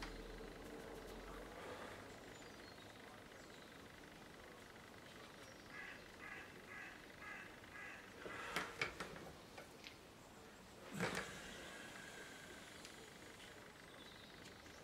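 A bird calling about six times in quick succession, roughly two to three calls a second, faint against a quiet room. A few sharp clicks follow, then a louder single knock about three-quarters of the way through.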